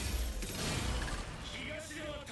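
Anime sound effect of a heavy impact: a deep rumble under a wash of noise that fades after about a second, with a voice starting in the second half.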